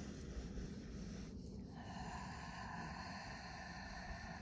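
A woman's slow, deliberate breathing, faint, with one long breath starting about a second and a half in. Low wind rumble sits underneath it.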